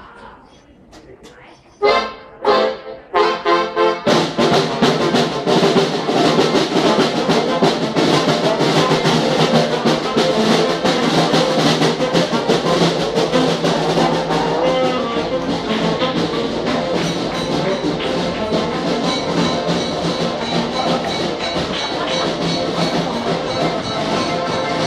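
Live band of accordion, brass and drum starting a tune: a few separate accented hits about two seconds in, then the full band playing steadily from about four seconds on.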